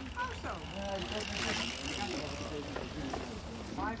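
Mountain bikes riding past on wet grass, their tyre noise swelling about a second and a half in as they go by.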